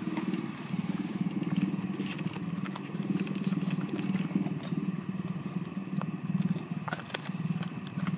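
A dog chewing a dried meat chew, with scattered short crunching cracks, over a steady low rumble throughout.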